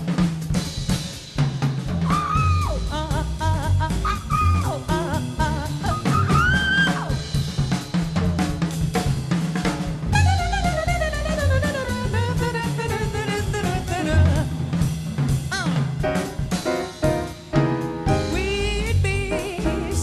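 Live jazz combo playing: a busy drum kit on snare, bass drum and cymbals over a walking upright bass, with melodic lines above, among them a long descending run about halfway through.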